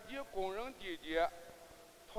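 A man giving a speech in Chinese into a stage microphone: a few short, emphatic phrases with strongly rising and falling pitch, stopping about a second and a half in.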